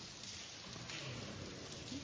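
Steady, faint hiss and patter of water dripping and trickling in the mine.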